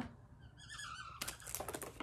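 Light, quick plastic clicks and taps as small cosmetic packaging is handled, clustered in the second half, with a faint brief high-pitched sound a little before them.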